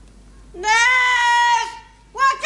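A high-pitched voice letting out a long, drawn-out call or wail about half a second in, rising at first and then held for about a second before breaking off.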